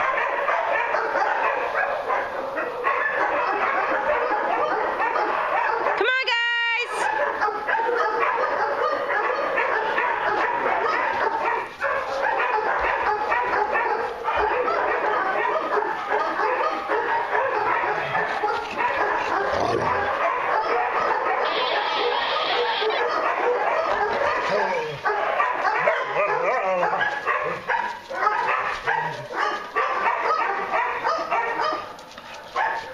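A pack of dogs barking and yapping over one another without let-up. About six seconds in, one brief high-pitched note sweeps sharply upward.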